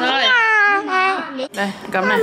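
A toddler's long, high, whiny wordless call, about a second long and falling in pitch, followed near the end by the start of more voice.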